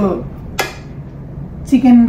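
One sharp clink of crockery about half a second in, as a serving plate is picked up from among other dishes on the table.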